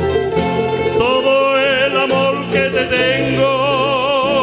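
Canarian folías played by a folk string ensemble of guitars, laúdes, bandurrias and timple, strummed and plucked together. About a second in, a solo voice enters, singing long held notes with a wide vibrato over the strings.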